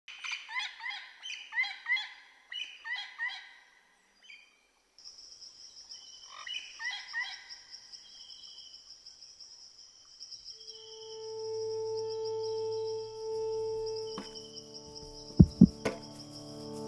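Birds calling in quick series of rising chirps, joined by a steady high whine; about ten seconds in, a music drone of held low tones fades in, and two loud sharp percussive hits come near the end.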